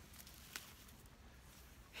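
Near silence outdoors, with one faint click about half a second in.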